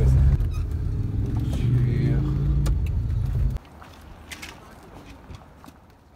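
Engine and road noise inside the cab of an old camper van under way: a loud, low, steady drone that cuts off suddenly about three and a half seconds in, leaving a quiet background with a few faint clicks.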